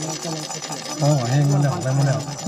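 Onlookers' voices around a rhinoceros beetle fight, with one voice holding a long call from about a second in, over a faint steady high whirring.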